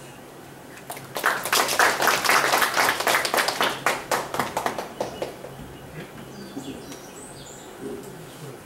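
Audience applauding: many hands clapping at once, starting about a second in and dying away by about five seconds.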